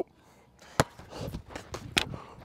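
Footsteps on artificial turf: a sharp knock a little under a second in, then softer scuffing with a couple more sharp knocks near the end.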